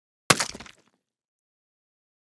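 A whipped-cream pie in a foil tin smacked into a face: one sharp splat with a crinkle of the aluminium tin, about a third of a second in, dying away within half a second.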